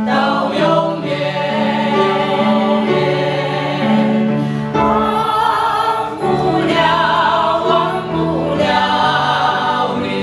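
A small mixed group of women's and men's voices singing a Mandarin Christian hymn together, with sustained, steady phrases.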